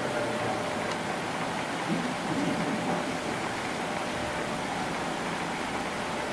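Steady hiss of room noise, with faint, indistinct voices about two seconds in.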